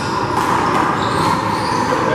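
Loud, steady drone of a fan or blower filling an indoor handball court, with light sneaker squeaks on the court floor and a faint ball impact.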